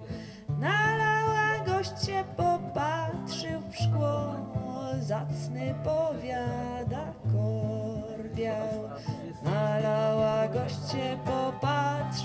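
Instrumental interlude of a live ballad: upright piano chords under a melody line that slides up into its notes.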